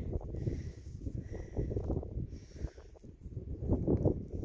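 A Thoroughbred horse walking on soft dirt, its hooves falling in soft, uneven steps over a low steady rumble.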